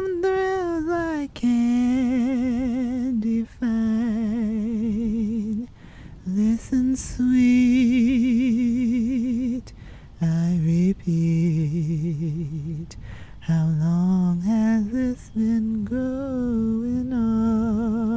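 A woman singing a slow melody a cappella without recognisable words, in a humming, crooning style, holding long notes with a wide vibrato between short breaths.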